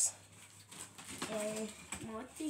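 A quiet room with one short, soft murmur of a voice just past a second in.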